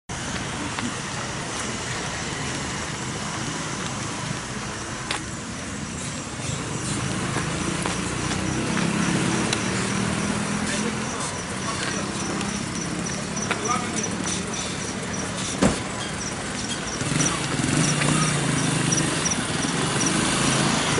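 Street sounds: motorcycle and car engines running over a steady traffic background, with indistinct voices of people nearby. A faint high pulse repeats a few times a second through the middle, and a single sharp knock comes about three-quarters of the way through.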